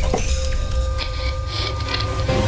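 Sci-fi logo-reveal intro soundtrack: a steady low rumble under held electronic tones, with short mechanical clicks and swishes.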